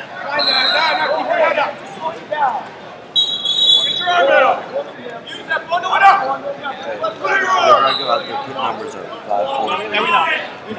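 Untranscribed shouting and talk of coaches and spectators echoing in a large hall during a wrestling bout. Three short, high steady tones cut through the voices.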